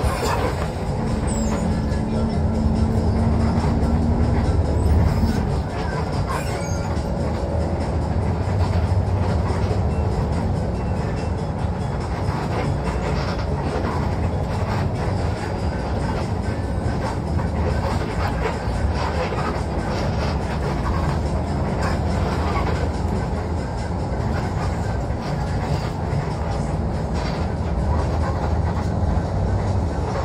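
Inside a moving coach bus: a steady low drone of the diesel engine and road noise heard from the cabin behind the driver, with a held tone in the first few seconds.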